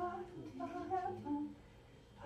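A woman humming a short wordless tune of a few held notes, stopping about one and a half seconds in.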